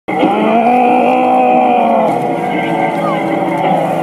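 Namahage performers' long, drawn-out howling shouts, one held for a couple of seconds, then a lower howl taking over.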